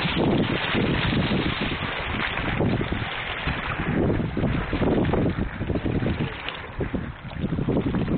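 Wind buffeting the microphone in uneven gusts over a steady rush of water around a small boat on open water.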